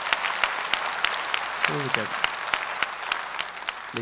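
Audience applauding, many hands clapping steadily and easing off toward the end, with a brief spoken sound about halfway through.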